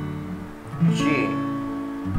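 Acoustic guitar: an open C chord rings and fades, then a G chord is strummed once about three quarters of a second in and left to ring.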